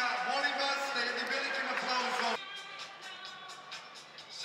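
Reverberant amplified voice or music over an indoor arena's public-address system, cut off abruptly about two and a half seconds in, leaving a quieter background.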